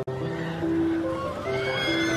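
Instrumental music of held notes changing step by step, cut sharply at the start. A high, wavering, gliding tone comes in about one and a half seconds in.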